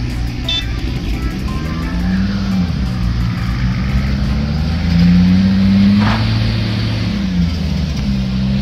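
Diesel engine of a Volvo tracked excavator working, its pitch rising and falling repeatedly as the hydraulics take load while it loads soil, over the steady running of a dump truck's diesel engine. The engine note is highest and loudest about five to six seconds in.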